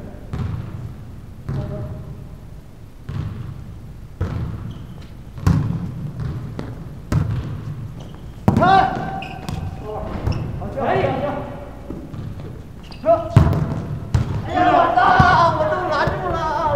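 Volleyball thumping: sharp knocks of a ball about every second or so, with players shouting in the second half, loudest near the end.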